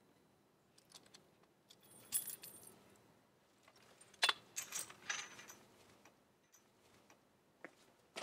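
Rusty metal chain rattling and clinking against a bicycle and its metal rack as the bike is freed, a scattered run of sharp metallic jingles and clinks that is loudest around the middle.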